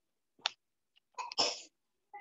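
A person sneezing once, a loud noisy burst about a second and a half in after a short intake.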